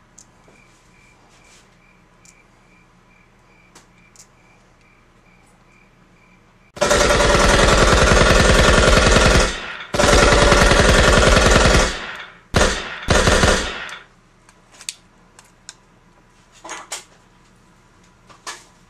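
A cricket chirping faintly and steadily, two or three chirps a second. About seven seconds in, a loud, rapid rattling drowns it out: one burst of about three seconds, one of about two seconds, then two short ones.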